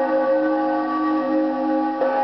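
Electronic spooky chord from an animated Halloween skeleton prop: several steady tones held together with a slight wavering, without the fading of a struck bell.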